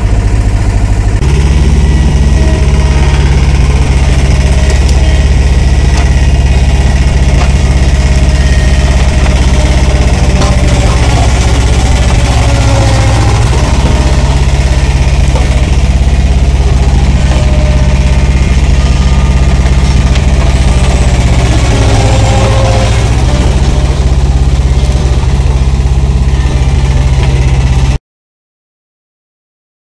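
Bobcat skid-steer loader's engine running steadily under load while its forklift forks dig out and lift shrub roots. The engine note shifts about a second in and changes again a few times as the work goes on.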